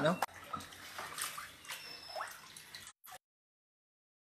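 Shallow floodwater on an indoor floor splashing and plopping, with a couple of short rising plops. The sound then cuts out to complete silence about three seconds in.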